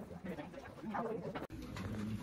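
Murmur of low voices in a classroom. About one and a half seconds in, the sound drops out for an instant and the background changes.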